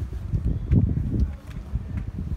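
Wind buffeting the phone's microphone, a low irregular rumble, easing off about one and a half seconds in as the camera passes into the shelter of the tent.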